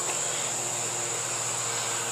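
Steady, high-pitched chorus of insects.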